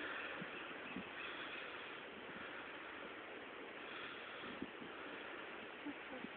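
Distant surf washing against rocks below, a steady wash that swells and eases every couple of seconds, with a few faint knocks.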